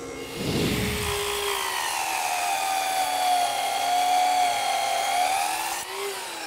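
Table saw with a stacked dado blade cutting a groove in a southern yellow pine board: a low rumble as the board meets the blade, then a steady high whine under load that sags slightly in pitch and rises again near the end, where it breaks off abruptly.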